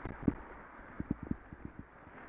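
Irregular knocks and rattles from a bicycle and its mounted camera jolting over a rough road surface, the loudest about a third of a second in and a quick run of them around a second in, over a steady hiss of wind and traffic.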